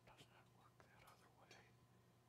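Faint whispering in near silence: a few soft, hissy snatches of hushed talk over a steady low hum.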